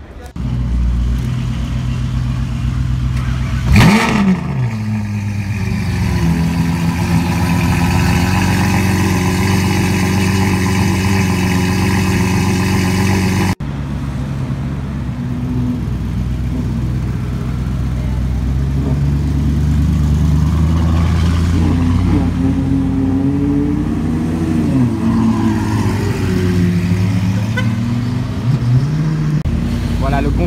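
A supercar engine with a sharp rev flare about four seconds in, settling into a steady loud idle. After an abrupt cut, the Mansory-tuned Lamborghini Urus's twin-turbo V8 idles with a few light revs and pulls away.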